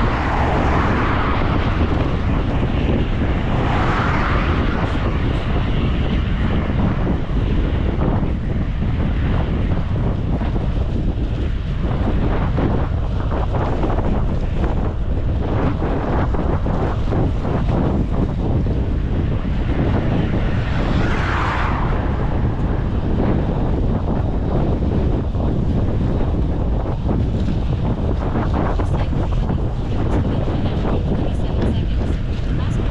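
Wind buffeting the action camera's microphone on a moving bicycle: a steady low rumble, with a few brief louder swells at about 4 seconds and about 21 seconds in.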